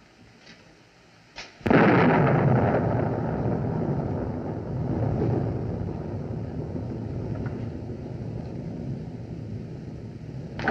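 A thunderclap film sound effect: a sudden loud crack about two seconds in, followed by a long rumble that swells once and slowly dies away.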